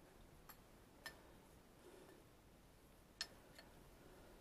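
Near silence broken by four sharp metallic ticks, the loudest about three seconds in: a steel kettle and folding camping stove ticking as they heat over a gel-fuel flame.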